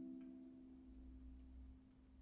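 The last notes of a custom Martin concert ukulele, rosewood and spruce, ringing out and fading away to near silence.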